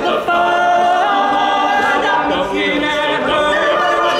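Male a cappella group singing a funk arrangement in close harmony, holding sustained chords that shift in pitch.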